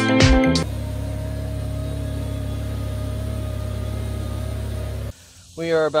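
Steiner tractor engine running at a steady drone; it cuts off about five seconds in. Background music ends under a second in, and a man starts speaking near the end.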